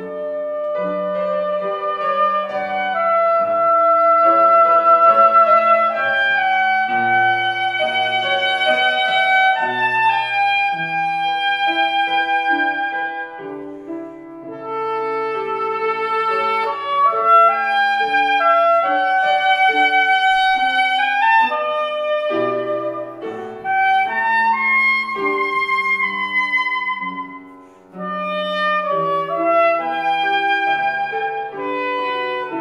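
Soprano saxophone playing a sustained classical melody over grand piano accompaniment, with a short break in the phrasing about halfway through and again near the end.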